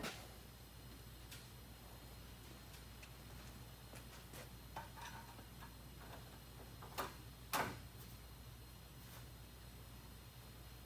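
Scattered light clicks and taps of hand work on metal parts in a car's engine bay, with two sharper clicks about seven seconds in, over a low steady hum.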